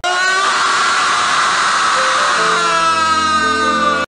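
A man's loud, drawn-out screaming laugh, held without a break, its pitch sliding slightly down near the end. A set of steady lower tones joins in about halfway through.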